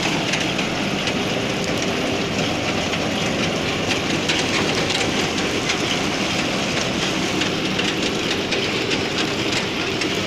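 Kartar self-propelled combine harvester running at close range while its header cuts standing grain: a loud, steady mechanical din with a fast clatter through it and no let-up.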